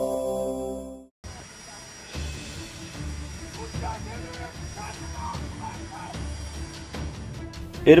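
A short electronic channel-intro jingle that fades out about a second in. After it come faint, muffled men's voices from a group of soldiers, talking over each other in the distance, recorded on a phone.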